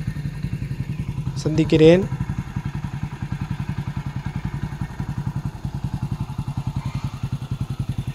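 Motorcycle engine idling with a steady, rapid, even beat.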